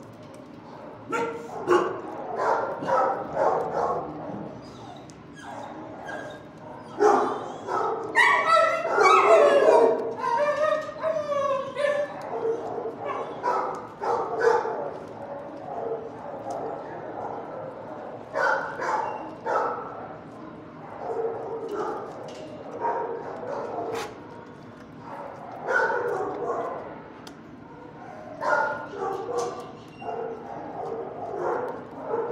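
Shelter dogs barking in bouts, with a run of gliding yelps and whines about eight to twelve seconds in.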